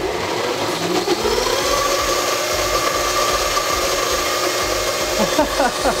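Blendtec 1500-watt countertop blender motor speeding up, rising in pitch over about the first second, then running steadily at high speed, churning eggs that the mixing heat has cooked into fluffy scrambled egg.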